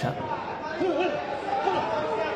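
Crowd chatter in a large arena, with a man's voice faintly heard now and then.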